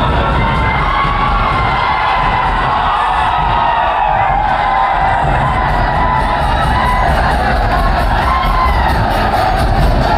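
A large crowd cheering and shouting together, steady and loud throughout, with music mixed underneath.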